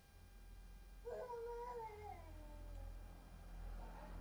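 A single faint, drawn-out animal call lasting about two seconds, starting about a second in, holding its pitch and then sliding down at the end, over a low steady background rumble.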